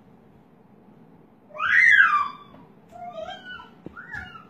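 A loud, high-pitched cry about a second and a half in that rises and then falls in pitch, followed by a few shorter, quieter cries.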